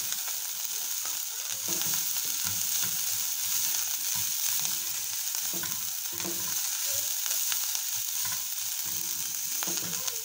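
Minced beef and parsley sizzling in a hot pan, with a steady hiss, while a wooden spoon stirs and scrapes through the mince in irregular strokes.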